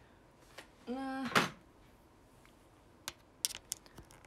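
A woman's short voiced syllable ending in a sharp click, then a few light, quick clicks and taps of a smartphone being handled close to its own microphone.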